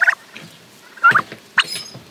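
Young domestic turkeys calling close by: three short, high-pitched calls, one at the start, one about a second in and one a half-second later.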